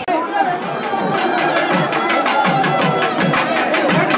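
Traditional temple music: a reed pipe playing a wavering held melody over a quick, steady drum beat, building up about a second in over crowd chatter.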